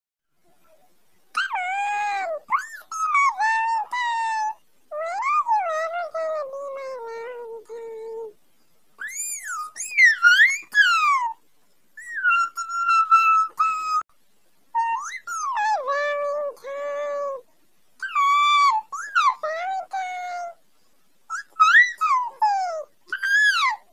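A Happycorn electronic toy's high-pitched, warbling voice sounds in about seven phrases of a few seconds each, the pitch sliding up and down, with short pauses between them.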